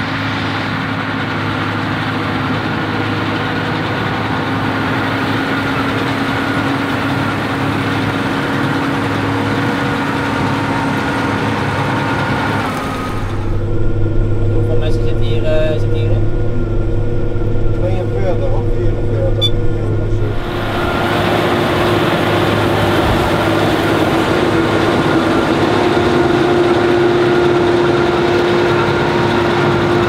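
John Deere 6R tractor and Schuitemaker Rapide self-loading forage wagon working at a steady load as the wagon's pick-up gathers grass. Through the middle stretch the sound is heard muffled from inside the tractor cab.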